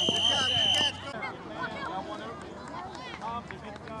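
A referee's whistle blown in one long, steady, high blast that stops about a second in, with people's voices chattering throughout.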